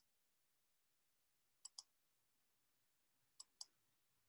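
Computer mouse clicks, two pairs of quick clicks about two seconds apart, with near silence between them.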